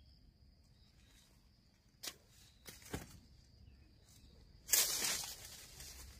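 Dry corn stalks, leaves and husks crackling and rustling as ears of field corn are picked by hand: two sharp snaps, about two and three seconds in, then a louder burst of rustling and tearing near the end. A faint steady high-pitched whine sits underneath until that burst.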